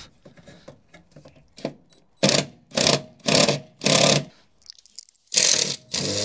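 Cordless drill/driver run in short bursts on a horn-mount fastener: four quick bursts about half a second apart, then a longer one near the end. The fastener won't come out and its screw head strips.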